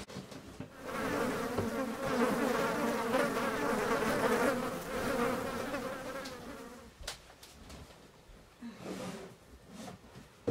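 A fly buzzing close by for about six seconds, loudest in the middle and fading away around seven seconds in. A sharp click follows, then a few faint knocks.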